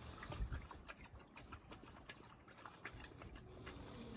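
Wolves lapping water from a metal trough: faint, irregular little clicks.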